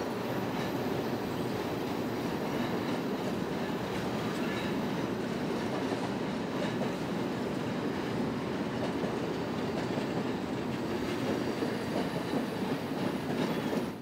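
Train of passenger coaches rolling across a steel girder trestle bridge: a steady noise of wheels on the rails over the bridge.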